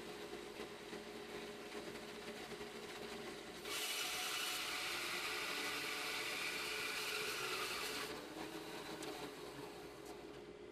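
Bandsaw running with a steady hum; about four seconds in, its stock blade starts cutting across the end of a log, a loud, hissy cutting noise that lasts about four seconds as a half-inch slice is sawn off. It then fades back to the saw running free.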